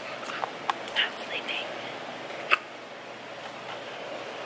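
A baby making a few faint, short, high squeaks and breathy mouth sounds about a second in, with a sharp click about two and a half seconds in; otherwise quiet room hiss.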